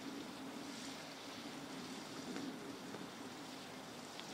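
Faint, steady outdoor background noise with a low hum underneath and no distinct events.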